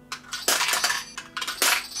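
Metal yen coins pushed into the slot of a plastic ATM-style toy coin bank, giving several sharp clinks as they drop inside.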